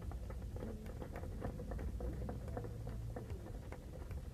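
Light, scattered hand-clapping from a small audience: many irregular separate claps.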